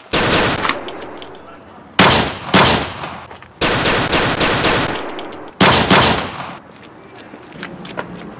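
Gunshots fired in four quick volleys a second or two apart, two or three shots in each, every shot trailing off in an echo.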